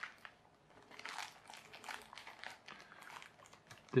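Plastic postal mailer bag crinkling faintly in short, irregular rustles as it is handled.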